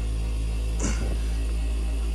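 Home-built steam Tesla turbine and its geared generators running under steam, a steady hum of several constant tones over a deep rumble. There is a brief rustle about a second in.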